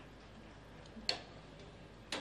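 Quiet room tone broken by a single short, sharp click about a second in.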